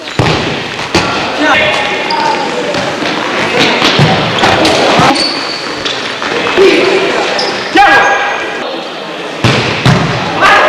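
Futsal match sounds: the ball being kicked and hitting the hard court in sharp, irregular thuds, under players and spectators calling out.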